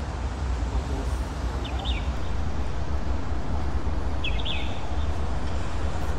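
Outdoor ambience: a steady low rumble, with two brief high chirps, one about two seconds in and one just past four seconds.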